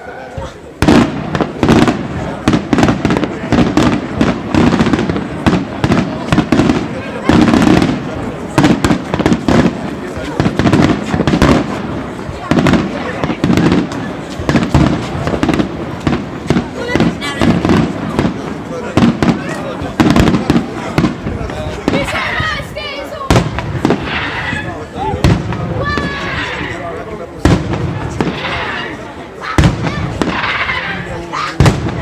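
Daytime aerial fireworks barrage: a rapid, continuous string of loud bangs from shells bursting overhead, starting about a second in. In the last third the bangs are joined by higher crackling.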